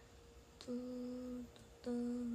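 A woman humming two held notes at the same pitch, each under a second long, with a short break between them.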